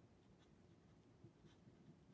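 Faint pen strokes on lined notebook paper as a word is written out by hand, with a few light ticks of the pen tip.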